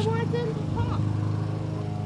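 Steady hum of a lawn mower engine running at a constant speed.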